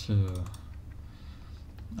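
A man's voice ending a word at the start, then light clicking from a computer keyboard.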